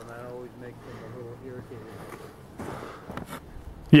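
Quiet, indistinct talking, then a short crunching of footsteps in snow about three seconds in.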